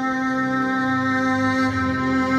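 Amplified violin holding one long, steady note, with lower accompanying notes changing underneath.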